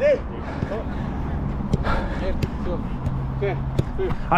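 Players' voices calling on a football training pitch, with a few sharp ball kicks.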